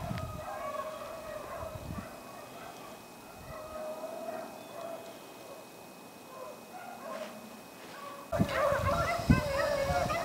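A pack of beagles baying while running a rabbit, their wavering voices faint and far off. About eight seconds in the sound turns louder, with bumps of noise on the microphone and the baying coming through stronger.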